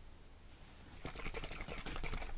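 Metal screw cap being turned on a small glass ink bottle: faint, quick scratchy ticking that starts about a second in.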